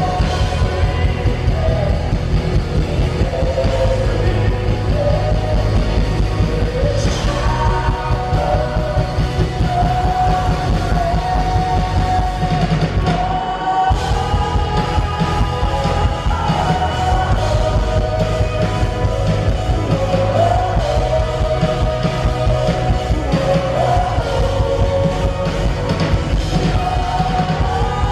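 A live worship band, singers with electric guitars, keyboard and drum kit, playing a song in a large hall, the lead vocal melody carried over the full band.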